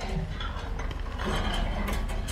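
Hydraulic excavator breaking off a large reinforced-concrete cantilever section of a bridge deck. Its engine runs as a steady low rumble under irregular sharp cracks and grinding clicks of concrete and steel as the bucket levers the section away.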